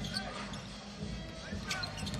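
Basketball bouncing on the court during live play, over the steady murmur of the arena and faint arena music.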